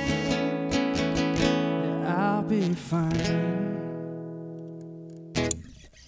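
Steel-string acoustic guitar strummed a few times under a last sung note, then the final chord rings out and fades away, ending a song. A short knock near the end cuts it off.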